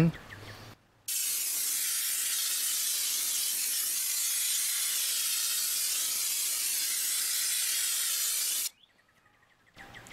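Compressed-air blow gun rigged as a homemade venturi sprayer, drawing water up a pen tube from a small bottle and spraying it: a steady, even hiss of rushing air and spray that starts suddenly about a second in and cuts off sharply after about seven and a half seconds, when the trigger is released.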